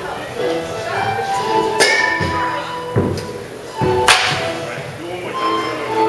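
Two sharp cracks about two seconds apart, a wooden baseball bat striking balls, with a few duller thuds of balls landing in between. Background music with steady tones plays throughout.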